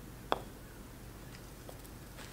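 Putter striking a golf ball once: a single sharp click about a third of a second in, with a much fainter tick near the end.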